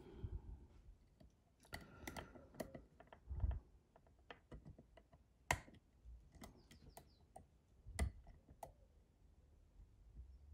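Faint, irregular small metallic clicks and taps of a dimple pick and tension tool working inside a Mul-T-Lock Integrator cylinder, with a dull thump about three and a half seconds in.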